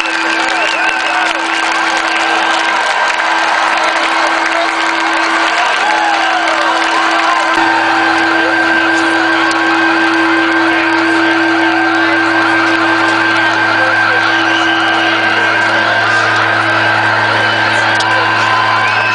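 Steady held musical tones droning on from the stage, a low hum joining them about seven and a half seconds in, with a crowd cheering and whooping underneath.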